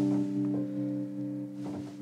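Electric piano playing a slow introduction: a chord held and slowly fading, with the notes changing about half a second in.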